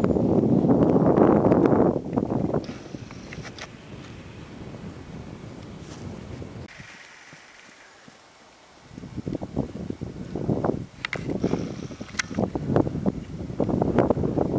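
Wind buffeting the microphone, heaviest in the first two seconds, then a quieter outdoor hiss. In the last few seconds comes a horse's hoofbeats at a trot on dirt, short strikes about three a second.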